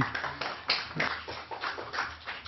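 Brief scattered applause from a few people, about three or four claps a second, thinning and fading out.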